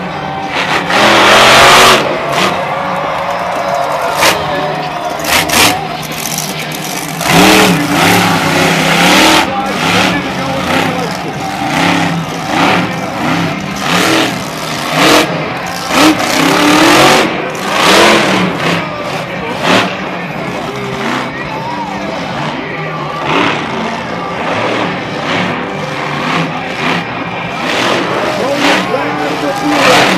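Monster truck's supercharged V8 revving hard in repeated loud surges as it launches over jumps and lands, heard through the arena's crowd noise and a public-address voice.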